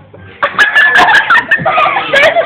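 A person shrieking loudly in a high pitch, starting about half a second in, with a long held, wavering squeal and some sharp clicks.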